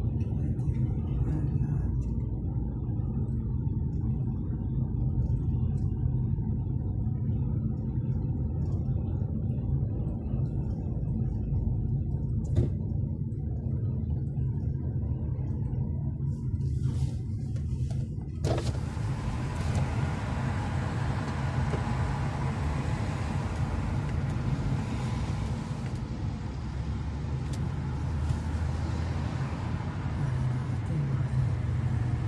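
Steady low rumble of a car's engine and tyres heard from inside the cabin while driving on an expressway. A little past halfway a loud rushing hiss of wind and road noise comes in suddenly and stays.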